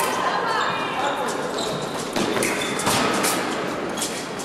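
Fencers' footsteps thudding on the piste as they move in guard, a few sharp steps in the second half, with voices in the background of a large, echoing hall.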